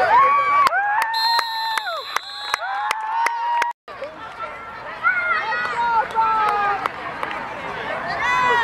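Sideline spectators shouting and cheering in long drawn-out yells as a youth football play ends in a tackle, with a shrill whistle, likely the referee's, sounding for over a second about a second in. The sound cuts out abruptly just before the midpoint, then quieter calls from the crowd carry on.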